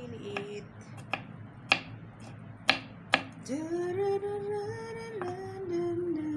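Kitchen knife chopping garlic on a wooden cutting board: about five sharp, unevenly spaced knocks of the blade hitting the board. About halfway through, a voice sings a few long notes.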